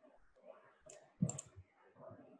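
A few quiet computer mouse clicks, with one brief low knock just over a second in, while a line is being drawn on screen.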